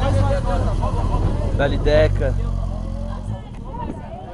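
Honda CBR900RR sport motorcycle's inline-four engine running with a steady low rumble, which drops away about three seconds in as the bike pulls off. Voices call out over it.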